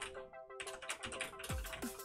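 Rapid typing on a computer keyboard, quick clicking keystrokes, over background electronic music with held chords; deep falling bass thumps of the beat come in near the end.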